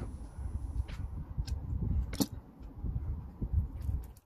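Light clicks and knocks of knife-sharpener parts and stones being handled on a tabletop, over a low rumble. The sharpest click comes about two seconds in.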